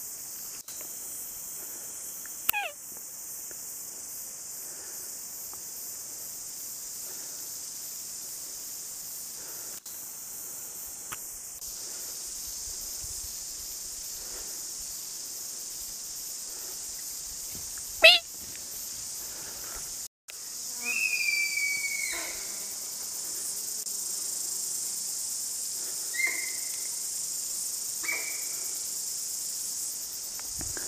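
A steady high-pitched insect chorus. Over it come a few sharp whistles falling quickly in pitch, the loudest about eighteen seconds in, and short clear whistled calls in the last third.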